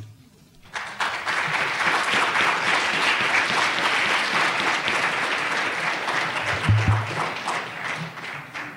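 Audience applauding in a large hall, starting about a second in and fading away near the end.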